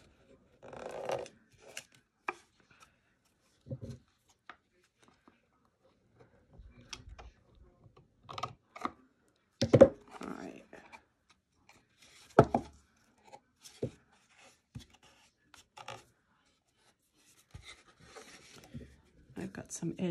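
Scissors trimming excess paper from a paper-covered cardboard box, with scattered snips, paper rustles and light knocks as the box and scissors are handled and set down. The loudest knocks come about ten and twelve seconds in.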